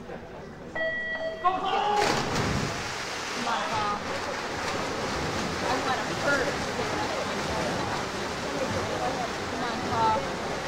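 A race start signal sounds as a steady tone for about a second. About two seconds in, the swimmers dive off the blocks, and a crowd cheers and shouts over the splashing of racing swimmers.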